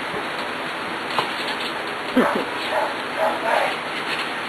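Pembroke Welsh Corgi puppies, about seven weeks old, yelping: a loud falling yelp a little past two seconds in, then a few short high yips.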